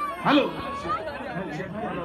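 A man's voice calling "hello" into a microphone over the concert sound system, then crowd chatter.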